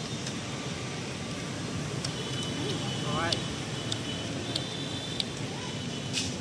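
Steady background noise with a faint voice heard briefly about halfway through, and a few small clicks.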